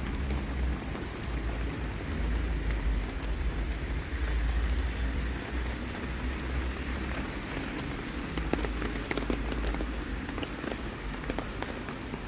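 Rain falling on a wet city street: a steady hiss with many small drop ticks, over a low rumble.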